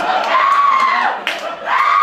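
A performer's voice giving two long, high vocal cries, each rising and then falling in pitch, the second starting near the end.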